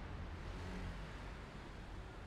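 Steady low rumble of a car driving in city traffic, with engine and tyre noise heard from inside the cabin.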